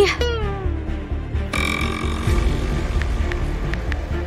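A woman's drawn-out vocal sound sliding down in pitch at the start, over background music. About a second and a half in, a brighter sustained musical tone joins the music, and a few faint clicks come near the end.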